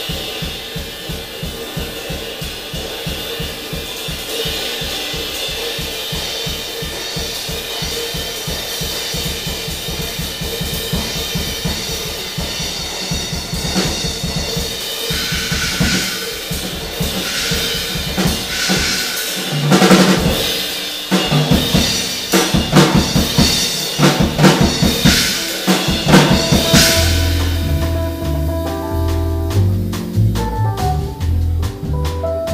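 Jazz drum kit played live: a rapid, even pattern of strokes under a held tone for the first half, then loud cymbal crashes and drum hits that build toward the end. Near the end the double bass and keyboard come back in.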